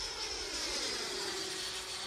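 Electric ducted fan of a Freewing 90mm F-16 radio-controlled jet whining as it flies past, its pitch slowly falling.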